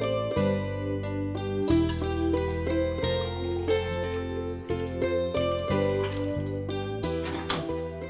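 Instrumental background music: a plucked-string melody over a held bass line that changes note every second or so.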